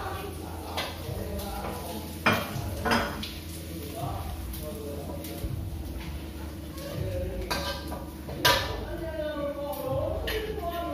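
Kitchen clatter of dishes and plastic food containers handled and packed, with a few sharp clinks, the loudest about two seconds in and near the end, over low voices.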